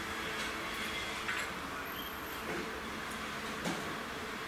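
Wooden matches handled to light a tobacco pipe: a short scratch about a second in and a sharp click near the end, over a steady hiss.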